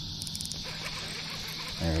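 Steady, high-pitched chorus of insects buzzing, with a man's voice cutting in near the end.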